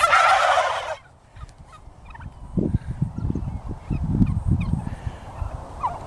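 A recorded turkey gobble from a squeezed turkey plush toy's sound chip, its last squawk ending about a second in; after a short lull there is low rustling handling noise from hands working the plush, and a fresh gobble starts at the very end.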